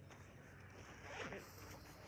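Near silence: faint outdoor ambience, with a soft brief rustle about a second in.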